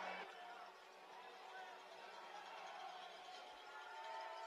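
Near silence: faint indoor arena room tone with a low, distant murmur.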